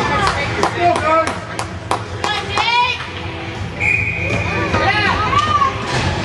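Ice rink game noise: children's voices and shouts mixed with sharp clacks on the ice, and one steady high whistle-like tone of about a second and a half a little past the middle.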